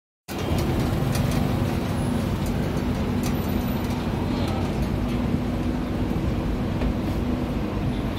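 Open-top double-decker tour bus on the move, heard from its upper deck: a steady low engine drone with road and traffic noise, and a few short rattles.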